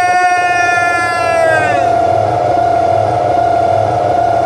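A man's long, high-pitched call held on one note into a handheld microphone. About halfway through the upper part of the note drops away while the main pitch carries on, over a low steady hum.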